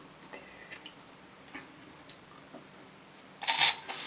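A few faint small clicks of handling, then near the end a faucet-mounted water flosser's jet starts spraying hard into a stainless steel cup, a sudden loud spray of water against metal.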